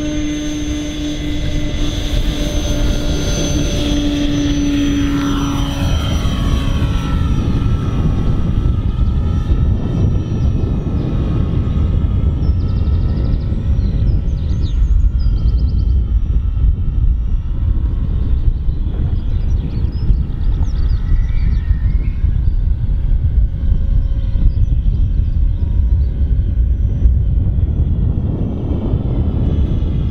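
Electric motor and propeller of a radio-controlled model aircraft running at full throttle with a steady high whine for the first several seconds of the takeoff, then fading and wavering in pitch as the plane climbs away and circles overhead. A steady low rumble runs underneath throughout.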